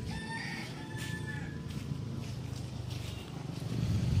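A bird calling twice in the first second and a half, two short pitched notes, over a steady low rumble.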